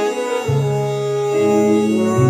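Jazz band recording playing sustained, held chords; a low note comes in about half a second in and holds beneath them.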